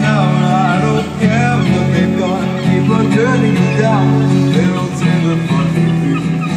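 Acoustic guitar strummed and picked steadily, playing an instrumental stretch of a song with no vocals.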